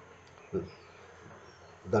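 A pause in a man's speech: a short vocal sound about half a second in, then faint background hiss, and his voice starts again at the end.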